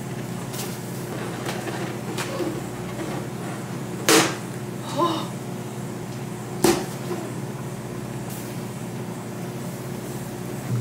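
Inflated latex balloons being handled: faint rubbing and squeaks, with two sharp snaps about four seconds in and again about two and a half seconds later, over a steady low hum.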